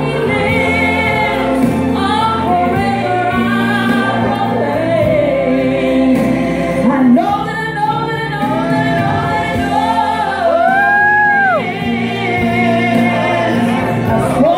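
A woman singing a gospel song through a microphone and PA over sustained instrumental accompaniment. About ten and a half seconds in she holds a long note with vibrato that drops off at its end.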